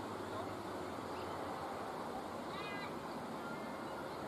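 Steady outdoor ground ambience, with one short, high, wavering call about two and a half seconds in.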